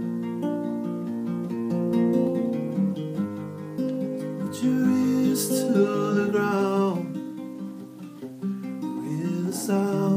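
Acoustic guitar played solo, chords plucked and strummed in a slow, steady flow of ringing notes.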